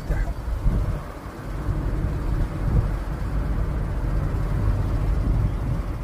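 Steady low rumble of a car driving, heard from inside the cabin: engine and tyre noise on the road, easing briefly about a second in.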